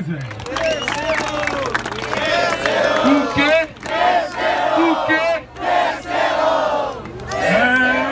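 A crowd shouting and cheering, many voices yelling at once, with brief lulls about three and a half and five and a half seconds in.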